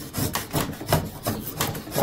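Drawknife shaving a piece of wood clamped in a wooden shaving horse: a run of short, quick scraping strokes as the blade is pulled across the wood to smooth it.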